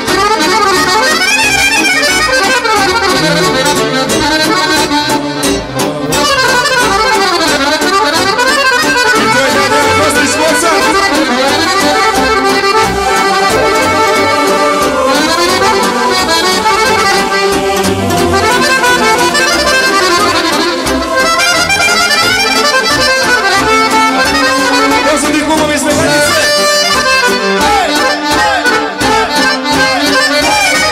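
Accordion-led Serbian folk music: an accordion plays quick, ornamented melodic runs over a full band backing. The song runs on without a break.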